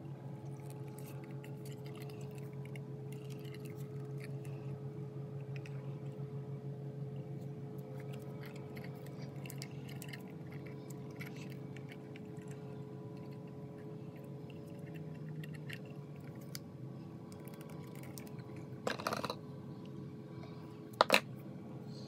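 Faint handling noises of adhesive tape and a thin brass diaphragm disc being worked by hand, with scattered small clicks over a steady low hum. Near the end comes a brief scrape, then two sharp clicks, the loudest sounds.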